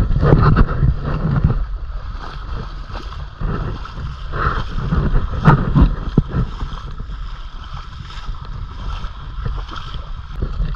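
Legs wading through shallow river water, sloshing and splashing in uneven surges with each stride, with wind rumbling on the microphone underneath.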